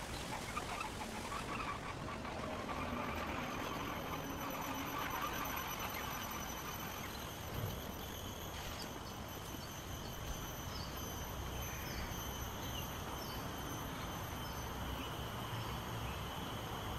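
Outdoor park ambience: a steady background hiss with a faint high steady tone, and faint short bird chirps scattered through the second half.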